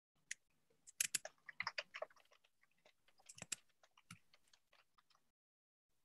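Faint computer-keyboard typing heard over a video-call microphone: a quick run of keystrokes about a second in, then a few more keystrokes around three and a half to four seconds.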